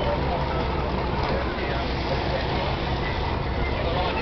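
Outdoor harbour background: a steady low rumble with faint distant voices.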